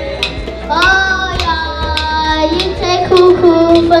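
A young boy singing into a microphone, holding long notes from about a second in, over a steady beat on djembe hand drums.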